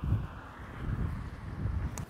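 Wind buffeting the microphone: a low, gusty rumble that rises and falls unevenly.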